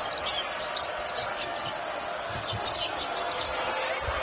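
Steady arena crowd noise with a basketball being dribbled on a hardwood court.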